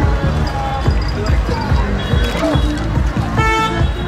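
Loud dance music with a heavy, pounding beat played through a parade float's loudspeaker, over crowd voices, with a short horn-like toot about three and a half seconds in.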